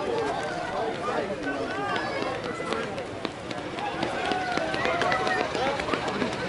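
Overlapping chatter and calls from several people, players and spectators talking at once, with a few short sharp clicks.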